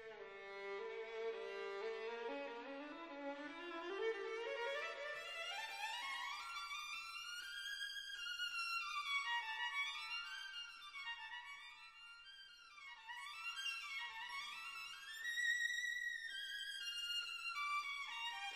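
Classical music: a violin plays a slow melody that climbs steadily from its low register over the first eight seconds, then moves in rising and falling phrases high up, softening briefly around the middle.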